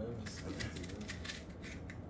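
A kitchen knife cutting an onion held in the hand, heard as a quick run of small clicks.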